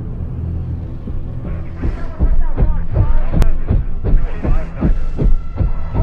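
Film soundtrack: a deep, steady rumble, then from about two seconds in a heavy rhythmic thumping of approaching military helicopter rotors, mixed with dramatic score music.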